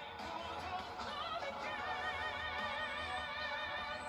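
Male singer holding high, sustained notes with a wide vibrato in a live concert recording, heard as quiet playback.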